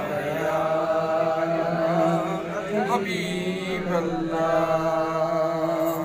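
A man's voice chanting a devotional Sufi verse into a microphone, holding long drawn-out notes with a few short breaks for breath.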